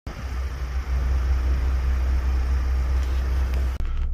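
Steady low rumble with a wash of noise from road vehicles, which cuts off suddenly just before the end.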